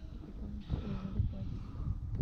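Quiet, indistinct voices of people talking in a raft, over a low steady background noise.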